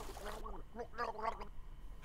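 A man's voice talking through gurgles, as if speaking with his head under water, so the words come out garbled; it trails off about one and a half seconds in.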